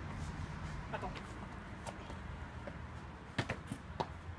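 A few scattered sharp taps of a runner's feet striking stone paving, two of them close together near the end, over a steady low outdoor background noise. A brief chirp-like sound comes about a second in.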